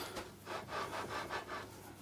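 A heavy straightedge rubbing on the blued top of a lathe bed as it is shifted back and forth to spot the high points, a few faint short rubs.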